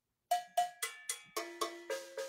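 A set of drum-kit cowbells of different pitches struck one after another with a drumstick, about seven strokes at roughly four a second, each leaving a short ringing tone. The cowbells are tuned to mirror the tonality of the toms.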